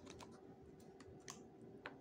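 Faint, irregular ticks of paper pages being flipped through by hand in a thick softcover book, about half a dozen small clicks over low room hum.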